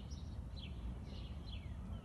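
Small birds chirping outdoors: several short chirps and a few quick notes falling in pitch, over a steady low rumble.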